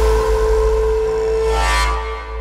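Electronic dance music soundtrack in a breakdown: the beat drops out, leaving one held synth note over a deep bass drone, with a brief swell of higher notes near the end.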